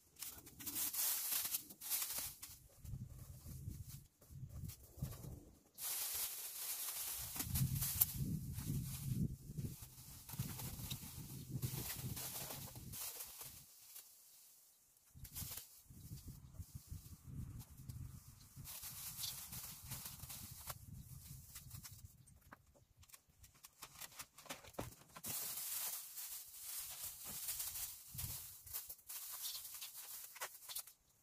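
Thin plastic masking film rustling and crinkling as it is pulled and smoothed by hand over a glass door, in bursts with short pauses between them, with a low rumble at times underneath.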